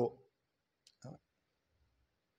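A man's speaking voice trails off at the start, then a brief pause with a small click and a short faint vocal sound about a second in.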